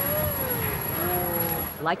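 Propane flame effect on a giant steel mushroom sculpture firing, a steady low rushing rumble. Over it a long moan-like tone rises and falls in the first second, then lower held tones follow.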